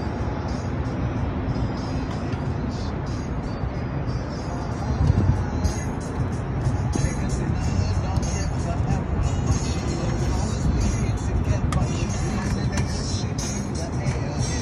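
Hip-hop track playing in the gap between rapped verses, over a steady rushing noise.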